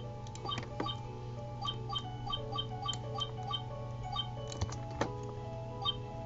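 Quiet background music of light, evenly paced plucked notes over held tones, with a steady low hum and a few sharp clicks.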